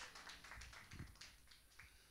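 Near silence: faint room tone with a few soft taps or clicks in the first second or so, then quieter still.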